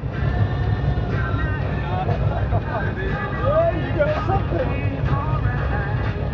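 Fishing boat's engine idling with a steady low rumble, under faint talk.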